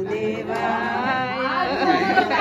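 Voices chanting a Hindu devotional chant, with held, wavering notes.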